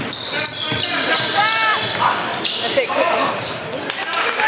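Live basketball play on a hardwood court in a large gym: the ball bouncing and sneakers squeaking in short rising-and-falling chirps, with players' voices shouting.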